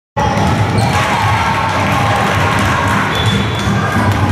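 Several basketballs bouncing on a gym floor in a large sports hall, mixed with children's voices.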